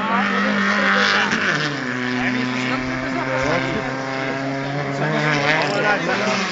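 Hill-climb race car engine running at sustained revs. It drops in pitch about a second and a half in, as at a gear change, then holds steady.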